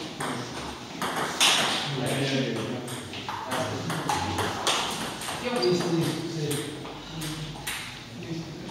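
Table tennis ball clicking off paddles and bouncing on the table in a rally, a sharp click about every half second, with voices talking in the hall.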